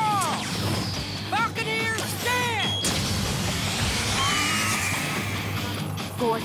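Cartoon battle sound effects over dramatic background music as a Bakugan is thrown onto the field: a few quick swooping sounds, a sharp crash about three seconds in, then a rising whoosh.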